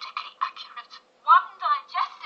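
Film trailer soundtrack played back through a small speaker, thin and tinny: short choppy voice-like sounds, then two louder wavering vocal sounds about a second and a half in.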